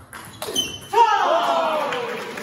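A table tennis ball's click as the rally ends, then a loud shout of a player's voice about a second in, falling in pitch, with voices going on after it.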